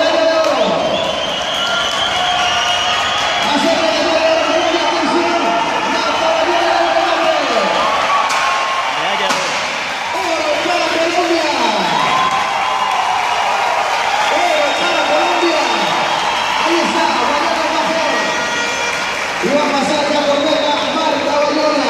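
A velodrome crowd shouting and cheering while cyclists race on the track, many voices overlapping. A few sharp bangs come about eight to nine seconds in.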